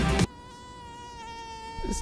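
A flying insect buzzing: one steady, even-pitched drone that starts as music cuts off abruptly just after the start.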